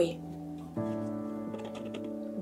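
Soft background music: sustained chords, moving to a new chord just under a second in.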